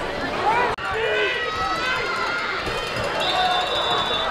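Football crowd and players shouting and cheering, many voices overlapping, with a brief steady high tone near the end.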